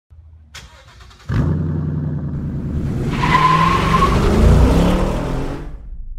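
A car engine sound effect: a click, then the engine bursts into life about a second in and runs. It then revs up with rising pitch, with a brief high squeal partway through, before fading out.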